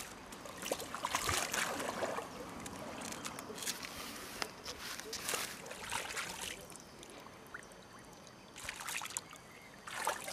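Water sloshing and splashing in several irregular short bursts as a landed carp is put back into the lake.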